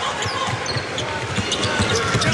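A basketball being dribbled on a hardwood court, a run of repeated bounces over the steady noise of an arena crowd.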